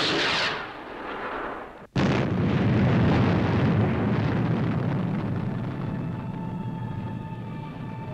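Rocket-launch sound effect: a hissing blast that dies away. About two seconds in it gives way abruptly to a loud explosion with a low rumble that slowly fades.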